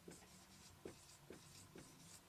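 Faint strokes of a marker pen being written across a whiteboard, a few short scratches about half a second apart.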